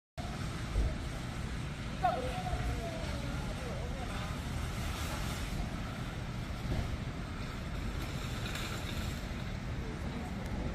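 Outdoor street ambience: a steady low rumble of traffic with wind on the microphone.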